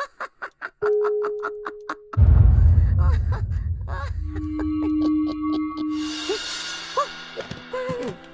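Cartoon score with sound effects: a held note, then a loud low rumble that starts suddenly about two seconds in and fades, then a steady tone and short squeaky vocal sounds near the end.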